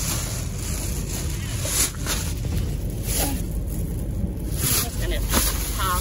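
Bedding, bags and belongings rustling and being shifted by hand in irregular bursts, over a steady low rumble.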